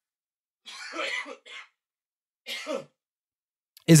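A person clearing their throat twice in short, breathy bursts, the first about a second in and a shorter one past the middle.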